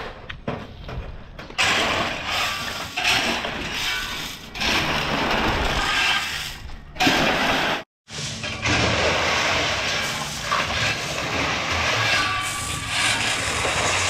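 Steel shovels scraping and digging into crushed gravel on a truck's metal bed, with the gravel pouring off the side and clattering down onto a pile. It breaks off for a moment in the middle and picks up again.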